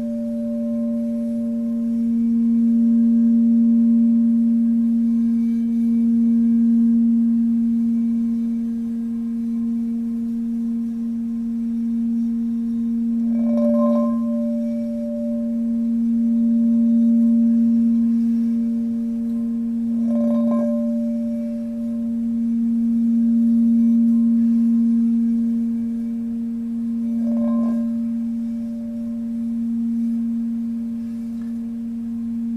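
Singing bowl sounding a steady low tone that slowly swells and fades. It is struck three times, each strike adding a brighter, higher ring that dies away over a couple of seconds.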